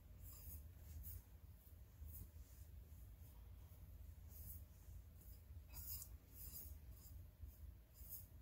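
Faint, irregular swishes of a paintbrush stroking crackle medium onto a tumbler, several strokes a second.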